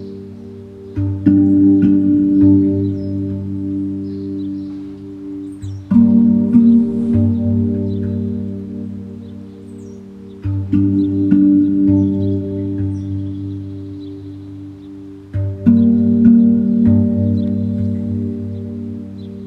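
Meditation music on a pandrum, a steel tongue drum. A short cluster of struck, ringing notes comes about every five seconds, four times, each sustaining and slowly fading over a low pulsing tone.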